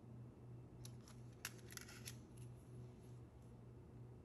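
Near silence: a few faint clicks, from about a second to two and a half seconds in, of the plastic C-track double slip switch being handled and set down on the table, over a low hum.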